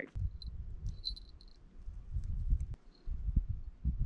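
Low rumble of wind buffeting the microphone, rising and falling in gusts, with a few faint, short high chirps in the first second and a half.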